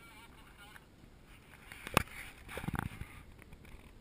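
Faint voices of people in the distance. A single sharp click about two seconds in, followed by a brief burst of rustling noise.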